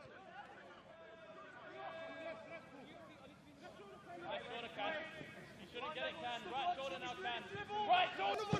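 Faint, indistinct voices across a football pitch, getting louder about halfway through.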